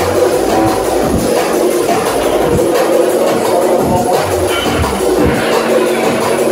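Drum and bass music playing loud through a club sound system, with a deep bass line throbbing under a busy beat.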